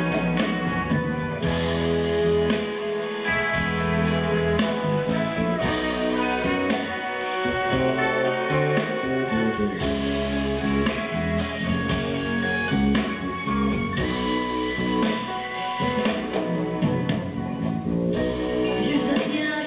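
Live band playing an instrumental break of a pop song, guitar to the fore, with no singing.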